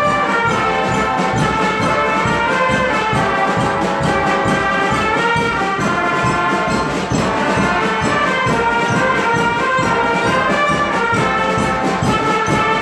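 Marching band's brass section, trumpets and trombones among the brass, playing a piece together at full volume without a break.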